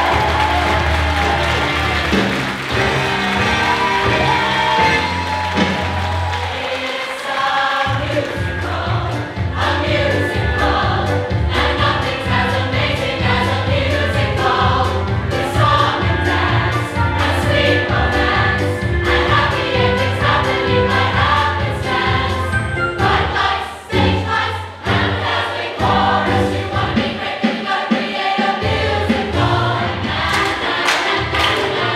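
A large mixed choir singing an upbeat show tune over a backing track with a steady beat and bass line. The sound dips briefly about 24 seconds in.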